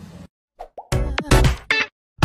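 Animated logo sting: a short jingle of quick plopping, popping hits with a brief pitch glide. It starts about half a second in, after the previous sound cuts off.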